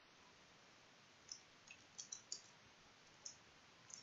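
About six faint, scattered computer keyboard keystrokes, short light clicks.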